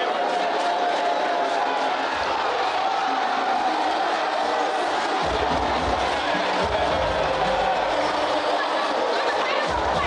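Boxing arena crowd noise: many voices shouting and chattering at once. Music with a heavy bass comes in about five seconds in.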